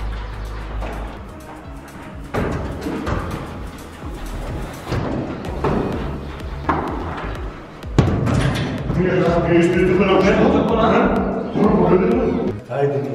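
Background music under men's voices, with one sharp thump about eight seconds in, the sound of the football being struck. After it the voices grow louder.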